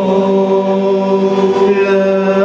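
Group of male voices chanting selawat, an Islamic devotional song, in unison, holding one long drawn-out note that steps slightly in pitch near the end.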